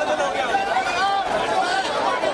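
A crowd of people talking and shouting at once, many voices overlapping into a dense chatter with no single voice clear.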